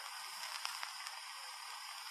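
Steady hiss with scattered faint crackles: the surface noise of an old archival speech recording.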